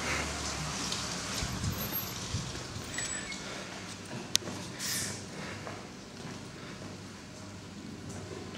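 Faint, steady background noise from a handheld camera being carried indoors, with scattered small clicks and handling knocks and one sharp click about four seconds in.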